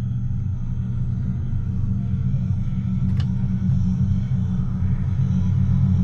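A deep, heavy rumbling drone, the film's ominous sound design, growing slowly louder. A brief sharp sound cuts across it about three seconds in.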